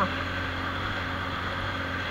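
Motorcycle engine running steadily at riding speed, with a steady low drone under wind and tyre noise on a dirt road.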